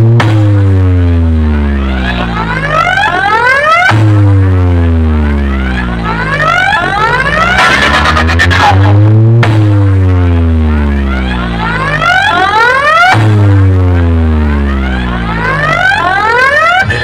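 A stacked DJ speaker wall with four bass and four mid cabinets playing a speaker-check track very loud. Sweeping tones rise and fall in pitch over a deep bass tone that slides down, the pattern repeating about every four seconds.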